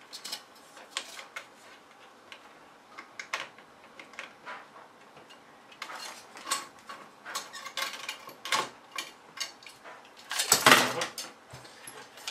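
Scattered plastic-and-metal clicks and knocks of a Cooler Master CPU heat sink fan's retention clip being worked loose and the cooler being handled off the processor, with one louder, longer burst of rattling near the end.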